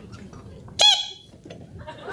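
A person's short, high-pitched squeal or yelp, once, a little less than a second in.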